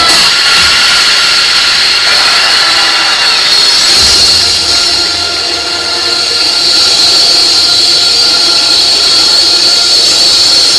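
Loud, steady rushing drone with faint high held tones, an atmospheric sound effect played over the show's sound system. It begins abruptly as the percussion music cuts off.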